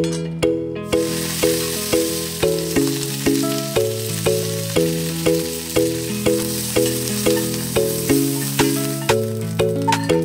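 Curry leaves and dried red chillies sizzling in hot oil in a cast-iron pan. The sizzle starts about a second in and stops just before the end, over background music with a steady beat.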